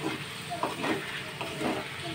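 Wooden spatula stirring diced potatoes and greens in a steel kadhai, scraping the pan a few times, over a steady sizzle from the pan after a little water has been added.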